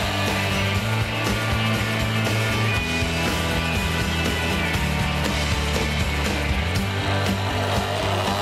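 Electric countertop blender running steadily at speed, beating eggs, vinegar, salt and sugar in its jug as the first stage of making mayonnaise. Background music plays along with it.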